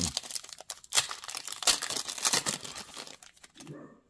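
Foil wrapper of a trading-card pack being torn open and crumpled by hand, a dense irregular crinkling that dies away near the end.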